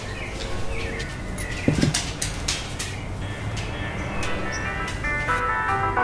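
A Siberian husky's claws clicking irregularly on a hard vinyl floor as he walks. Background music comes in about halfway and grows louder toward the end.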